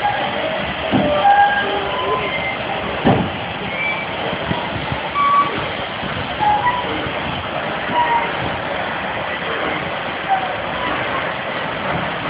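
Air-powered turntable swinging a steam locomotive: a steady hiss runs on, with two sharp clunks about one and three seconds in.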